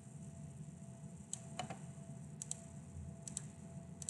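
Computer mouse clicking, about six sharp clicks, several in quick pairs like double-clicks, over a faint steady low hum.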